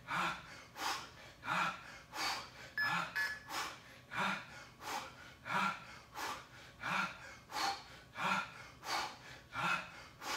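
A man breathing hard and rhythmically through his mouth under exertion, one forceful breath about every two-thirds of a second, paced with repeated resistance-band bicep curls.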